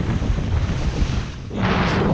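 Skis scraping and chattering over rough, sun-cupped summer snow at speed, mixed with wind buffeting the microphone, with a louder hissing scrape near the end.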